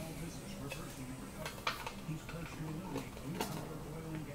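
Faint, low background talking, with a couple of light clicks from a plastic trading-card holder being handled.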